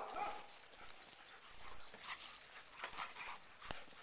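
A dog whimpering faintly in a few short whines, with a soft click near the end.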